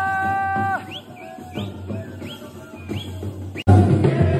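Live wedding band music: a wind instrument holds one wavering note that stops under a second in. A quieter stretch with a few short rising chirps follows, then the band, with drums, comes in loud and abruptly near the end.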